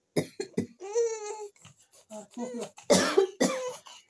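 A baby fussing: short gasps and a brief wavering cry about a second in, then a loud cough-like burst about three seconds in and another just after.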